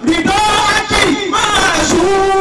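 A man chanting in a sung style through a microphone and PA, with a group of voices joining in. A short gap at the very start, then sustained, wavering sung notes.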